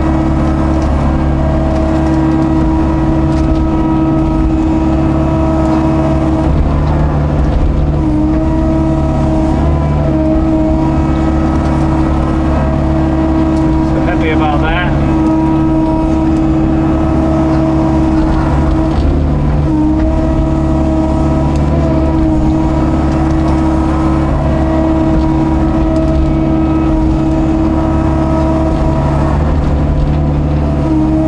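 Hitachi hydraulic excavator's diesel engine running steadily, heard from inside the cab while it digs mud, its note dipping briefly a few times as the hydraulics take load. A brief high wavering sound comes about halfway through.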